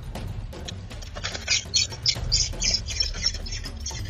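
Rapid high-pitched squeaky calls from a bird at a robin's nest, about five or six a second, starting about a second in.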